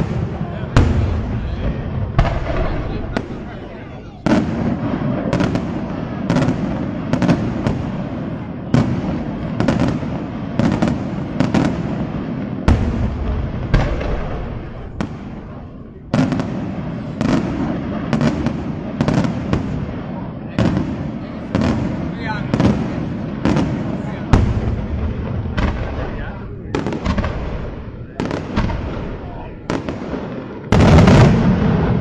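Daytime fireworks display: a rapid, unbroken series of sharp shell bursts, more than one a second, over a continuous rumbling crackle. The bangs ease briefly a few seconds in and again around the middle before resuming.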